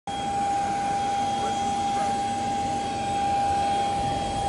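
Turbine of a parked business jet running: a steady rush with one constant high whine over it.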